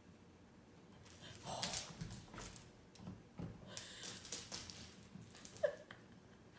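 Flame point Siamese kitten making soft mewing sounds, with a short, sharper mew just before the end.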